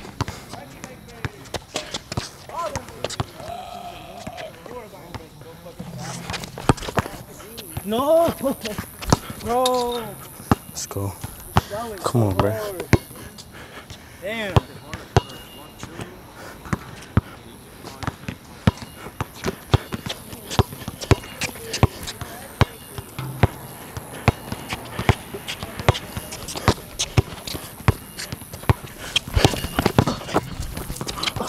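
Basketball dribbled repeatedly on a hard court, the bounces settling into an even beat of about two a second in the second half. A few short vocal calls come partway through.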